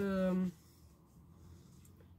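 A woman's voice holds a drawn-out vowel and trails off about half a second in, followed by faint rustling of paper notebook pages being handled.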